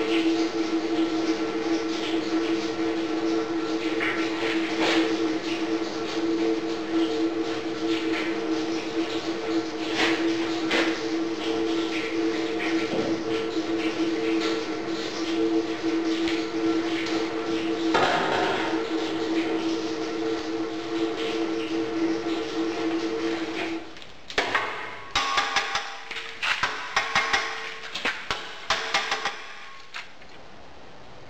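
A vacuum cleaner serving as the blower of a small gas-fired iron-melting furnace runs with a steady hum while the molten cast iron is poured. About 24 seconds in, the hum stops. A run of knocks and rattles follows as the castings are dug out of the sand mould.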